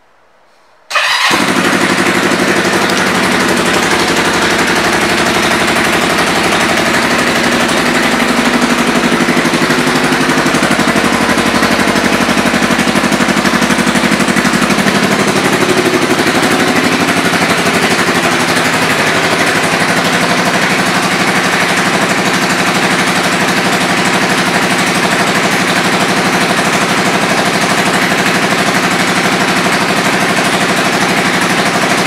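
Kawasaki Vulcan 500 LTD's parallel-twin engine, coming in suddenly about a second in and then idling steadily, its pitch shifting slightly a couple of times.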